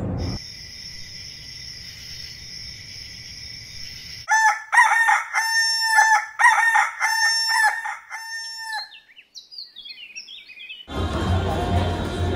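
Rooster crowing about four seconds in, a loud call of several joined notes lasting about four seconds, followed by a few small birds chirping. Before it, the fading end of a firework burst and a steady high ringing tone.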